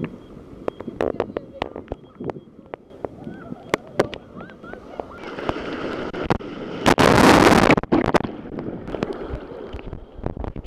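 Sea water splashing and crackling against a camera held at the waterline in the surf, with a loud rushing burst about seven seconds in as a wave washes over it.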